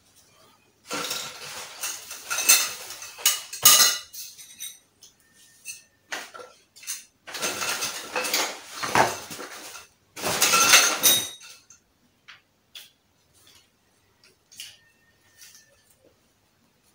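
Thin metal tubes and fittings of a portable wardrobe frame clinking and rattling as they are handled and fitted together. There are three bursts of clatter, then a few light clicks near the end.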